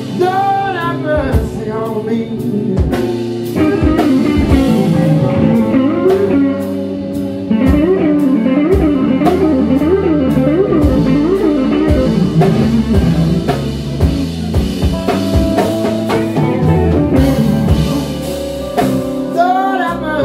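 Live blues trio playing a slow blues: an electric guitar lead with bent notes and wavering vibrato, over bass and drums.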